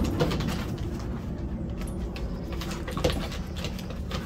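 Two dogs play-fighting: low play growls, with claws clicking and paws scuffling on wooden deck boards.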